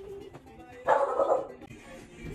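A dog barks once, a single short bark about a second in, over quiet background music.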